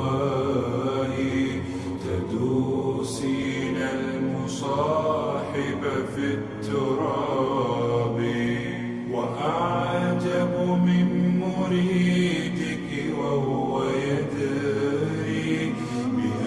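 Slowed-down, reverb-heavy a cappella nasheed: a male voice sings long, drawn-out Arabic lines over layered backing voices holding sustained low notes.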